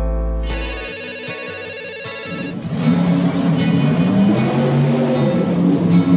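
A cartoon mobile phone ringtone, a fast warbling electronic ring, over background music. About two and a half seconds in it gives way to a cartoon truck engine running.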